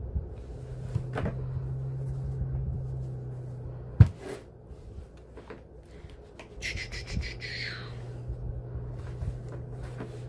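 Handling sounds of a small handheld iron being pushed and pressed into the folded edges of a padded cotton bowl holder, with a steady low hum underneath. A single sharp knock comes about four seconds in, and a brief higher rustle comes about seven seconds in.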